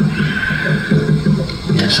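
A person's voice making a drawn-out, wavering sound with no clear words.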